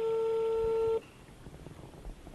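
A telephone call tone from an outgoing mobile-phone call: one steady beep about a second long that stops abruptly, heard through the phone's speaker held up to a microphone.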